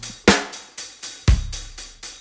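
Slow drum-kit backing beat at 60 beats per minute: two hits a second apart, each a kick with snare and cymbal that fades before the next.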